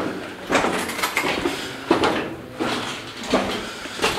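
Footsteps crunching on loose gravel and rock rubble at a steady walking pace, about five steps.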